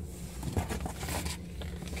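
Paper and cardboard rustling and crinkling as the contents of an opened mail package are handled, with a few small clicks. It is strongest from about half a second to a second and a half in.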